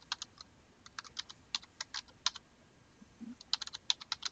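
Computer keyboard keys being typed in short irregular bursts of clicks, entering a subtraction into a calculator emulator.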